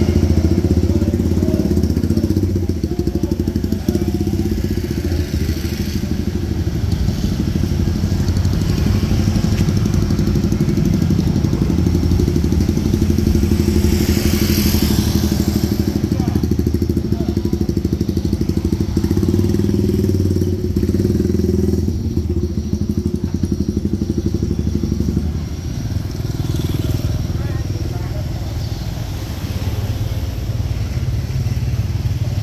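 Street traffic dominated by motorcycles: a steady low engine hum runs under the whole stretch, and a motorcycle passes close about halfway through.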